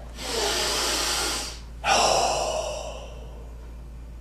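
A man taking a deep breath: a steady inhale of about a second and a half, then, after a brief pause, a long exhale that starts strong and fades away.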